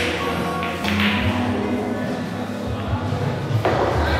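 Background music and indistinct voices filling a billiard hall, with a few sharp taps about a second in and near the end.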